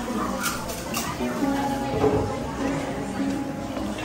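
Café background music playing under indistinct chatter from customers, with two light clicks about half a second and a second in.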